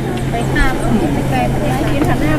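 Background chatter of people talking over a steady low hum, with no single sound standing out.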